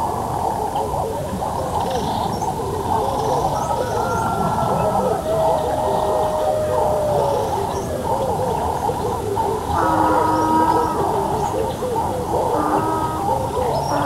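Several voices talking and calling over one another, muffled, with most of the sound low in pitch as on an old film soundtrack.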